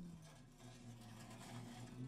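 Near silence, with a faint, low, steady drone.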